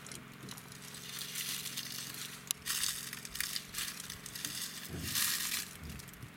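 Greater one-horned rhinoceros grazing: a few bursts of crunching as it tears and chews grass, over a faint low steady hum.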